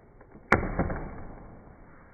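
A paper gift bag rustling and crinkling as hands pull at it, starting with a sharp snap about half a second in and dying away within a second.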